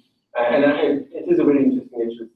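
A person's voice over a video-call link, speaking in short, broken phrases with a narrow, telephone-like sound.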